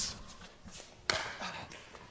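A single sharp pop of a pickleball paddle striking the ball about a second in, over quiet court ambience.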